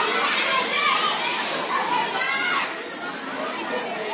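Many children's voices chattering and calling out at once, a steady babble of play with no single speaker standing out.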